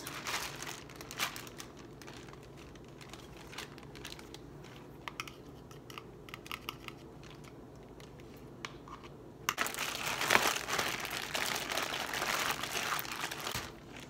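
Plastic zip-top bag crinkling as it is handled while sauce is spooned into it from a plastic bowl, with small scrapes and clicks of the spoon. About two-thirds of the way in the crinkling turns louder and denser for about four seconds, then stops just before the end.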